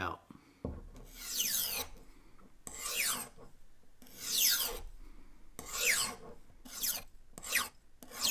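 Kitchen knife blade drawn along a non-abrasive steel honing rod in light alternating passes: about six scraping swipes, each sliding down in pitch, coming quicker near the end. The passes are straightening a folded-over burr on the edge.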